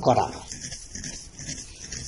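A man's voice through a microphone ends a word in the first half second, then a pause filled only by steady faint hiss and low hum.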